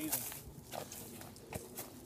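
Footsteps on dry leaf litter and twigs, a few scattered crunches and snaps, with a brief low vocal grunt right at the start.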